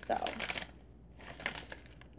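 Plastic snack pouch crinkling as it is handled, with a short rustle about a second and a half in.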